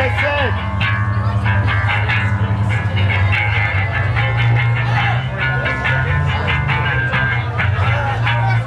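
Metalcore band playing live and loud: heavily distorted guitars and bass chugging under fast drums and cymbals, with voices over it.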